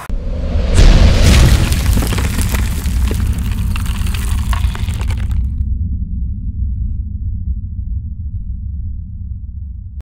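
Logo sting sound effect: a deep boom loudest about a second in, with many small crackles over it, followed by a low rumble; the crackles stop at about five and a half seconds while the rumble carries on.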